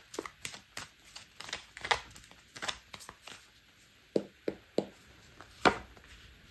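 Tarot cards being shuffled and handled: a run of irregular clicks and slaps of cards, with a few louder slaps in the second half as cards come off the deck onto the table.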